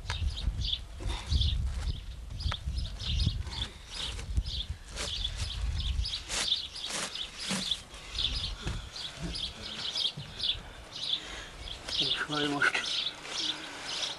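Small birds chirping over and over in the background. Dry cattail strands rustle and crackle as they are worked by hand into a woven cattail bed, with a run of sharp crackles between about five and seven and a half seconds in. A low rumble sits under the first six seconds.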